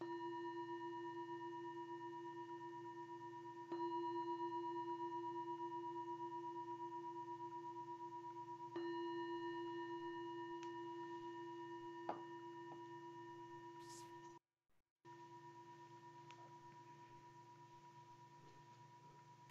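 Meditation bell struck three times, a few seconds apart, each stroke a clear ringing tone that dies away slowly; it is rung to close the meditation. The sound cuts out for a moment near the end.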